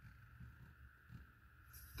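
Near silence: room tone with a faint low hum and a couple of soft, barely audible ticks as the elevation turret of a Delta Stryker HD 4.5-30x56 riflescope is turned by hand.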